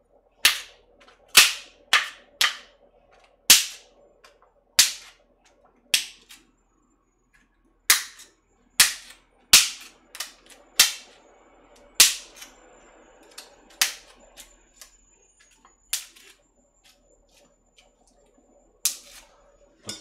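Plastic cling wrap stretched over a plate of frozen dumplings being pierced with a chopstick to vent it for the microwave: a series of sharp pops, about one a second at uneven gaps, each jab bursting the taut film.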